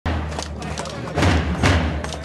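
Drums beating in a repeating pattern of two strong hits about half a second apart, over crowd chatter and a steady low hum.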